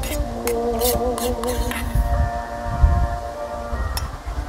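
Music with held, slightly wavering notes, and a few sharp clicks over its first two seconds, like a metal spoon against a metal bowl.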